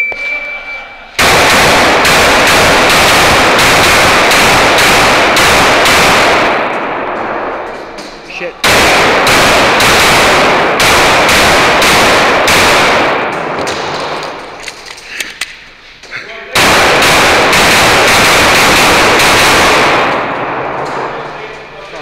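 A shot timer beeps briefly, then a Glock 19 9mm pistol fires rapid strings of shots, each shot echoing off the concrete walls of an indoor range. There are three bursts of fast fire with short pauses between them.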